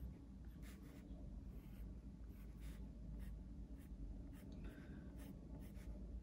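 Faint scratching of a graphite pencil on textured cold-press watercolour paper, drawing a series of short, irregular strokes.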